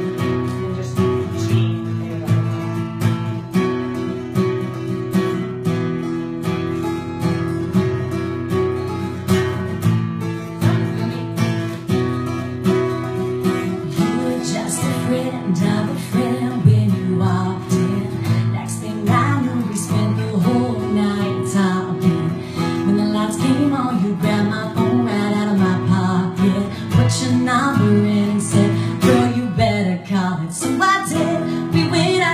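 Acoustic guitar strumming a steady chord pattern to open a country song, with singing coming in about halfway through.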